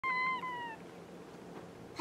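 A domestic cat meowing once: a short, high call that drops a little in pitch before it fades, all within the first second.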